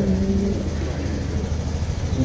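Steady low rumble throughout, with a short held hum from a voice in the first half-second.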